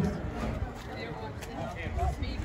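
Background voices of people talking, over a low outdoor rumble.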